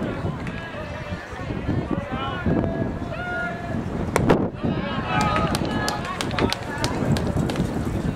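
Players and spectators calling out at a baseball game. About four seconds in a pitch smacks into the catcher's mitt, followed by scattered sharp claps.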